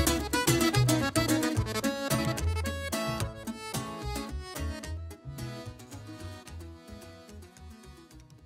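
Instrumental Mexican regional band music, accordion over a pulsing bass line, fading out steadily at the end of a song.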